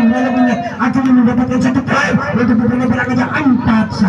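A man's voice, loud, calling out in long drawn-out syllables, as in live match commentary.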